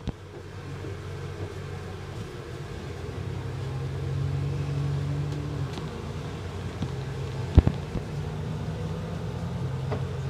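Alexander Dennis Enviro400 double-decker bus engine running, heard from on board. The engine drone grows louder about three seconds in and holds for a few seconds before easing off, and a single sharp knock comes near the end.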